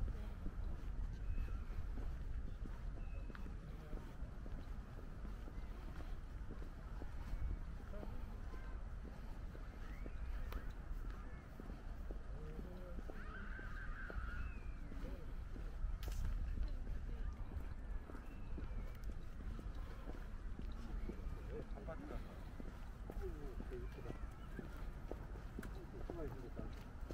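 Outdoor ambience: distant, indistinct voices of passersby over a steady low rumble, with one brief louder sound about halfway through.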